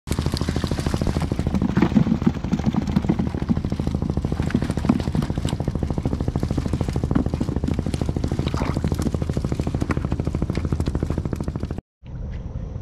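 Small boat engine running steadily with a fast, even chugging beat, under the rustle and clatter of a net full of fish being shaken out into a plastic drum. The sound cuts off suddenly near the end.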